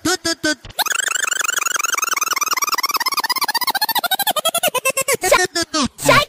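Brazilian funk mix: a short voice-like sample chopped into rapid stuttering repeats. About a second in it turns into a dense, very fast roll that slowly drops in pitch, then breaks up into spaced stutters again near the end.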